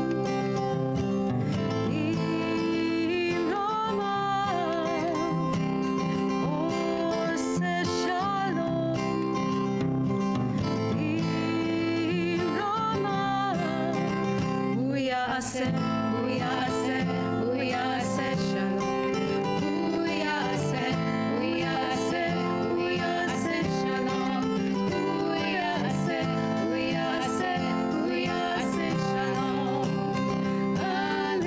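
Two women singing an upbeat song together, accompanied by a strummed acoustic guitar.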